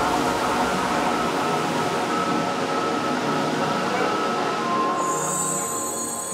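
Metro train running through an underground station: a steady rumble and hiss of the train, mixed with background music.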